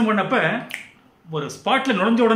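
A man speaking in a small room.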